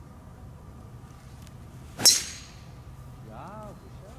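A driver striking a golf ball off the tee about two seconds in: one sharp crack with a short ringing tail. A brief vocal exclamation follows near the end.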